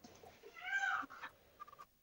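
A single short, high-pitched call, about half a second long, that rises and then falls in pitch, followed by a few faint clicks.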